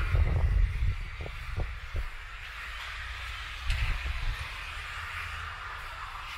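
Street ambience with a steady hiss, broken by low rumbling thumps on the microphone in the first second and again about four seconds in, with a few faint ticks in between.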